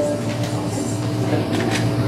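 The music dies away at the start, leaving quiet room sound: a steady low hum with a few faint clicks.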